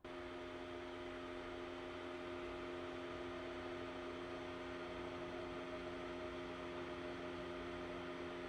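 Small electric fan running: a steady hum with a few fixed tones over an airy hiss.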